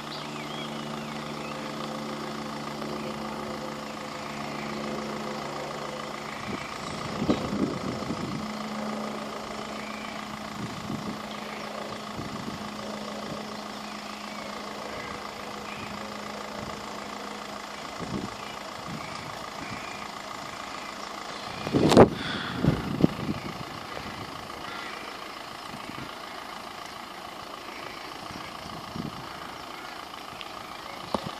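A UK level crossing yodel alarm warbling steadily with the barriers down, over the low hum of a waiting car's idling engine that fades out partway through. A sharp knock about two-thirds of the way in is the loudest single sound.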